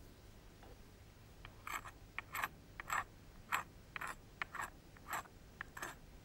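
A hand-held stone rubbed in short scraping strokes across the edge of a flint core's striking platform, about a dozen strokes, two or three a second, starting about a second and a half in. This is abrading the platform edge to prepare it before the next blade is struck.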